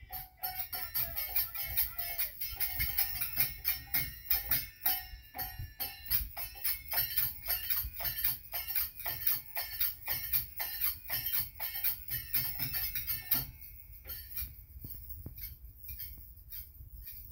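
Instrumental bhajan music: a harmonium playing over a fast, steady jingling hand percussion and a dholak drum. The playing drops off sharply near the end, leaving a few quieter jingles.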